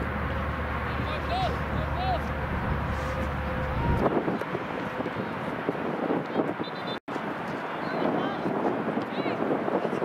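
Distant voices of soccer players and spectators calling across the field, with wind rumbling on the microphone for about the first four seconds. The sound drops out for an instant about seven seconds in.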